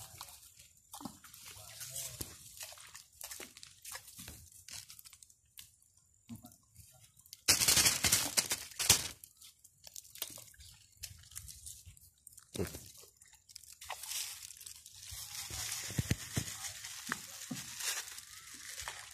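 Small open fire of dry twigs crackling and popping, with a louder burst of rustling and crunching about eight seconds in.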